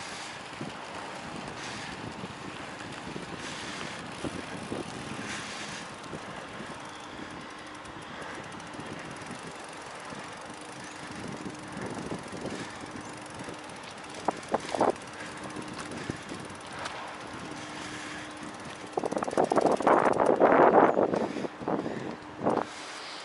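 Bicycle rolling over a muddy dirt path, a steady rough rumble of tyres on the ground with some wind on the microphone, and a few sharp clicks about two-thirds of the way through. Near the end comes a louder rough grinding and scraping for about two seconds, from a front wheel and tyre clogged with mud.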